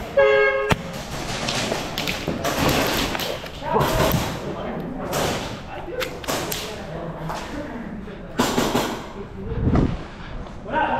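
A game buzzer sounds once for about half a second, signalling the start of an airsoft round. It is followed by scattered sharp knocks and thuds under shouted voices, echoing in a large hall.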